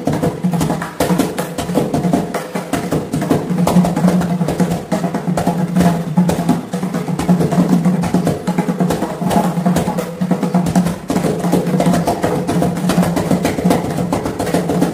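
Mridangam, the South Indian double-headed barrel drum, played solo by hand in a fast, continuous stream of strokes, its tuned head ringing at one steady low pitch under the sharp slaps.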